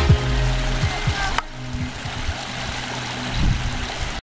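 Electronic background music with held synth notes and low beats, over the steady rushing of a small mountain stream.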